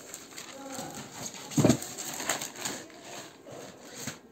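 Plastic courier mailer rustling as it is pulled off a cardboard box, with one loud thump a little over a second and a half in.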